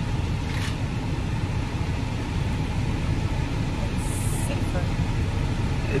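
Steady low road and engine rumble inside a moving car's cabin, with a brief high hiss about four seconds in.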